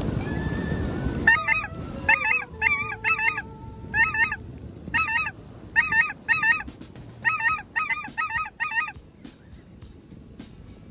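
Geese honking, about a dozen calls in a row over several seconds, fading near the end. Wind rumbles on the microphone in the first second.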